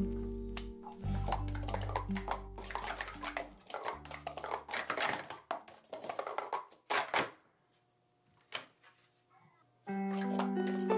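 Plastic speed-stacking cups clacking quickly and irregularly as they are stacked and unstacked, over background music that drops out about four seconds in. The clatter stops about seven seconds in, it is nearly quiet for a couple of seconds, and the music comes back at the very end.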